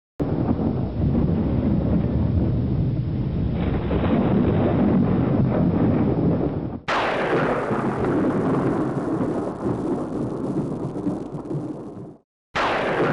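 Thunder rumbling steadily, then a new thunderclap about seven seconds in that rolls on and slowly dies away.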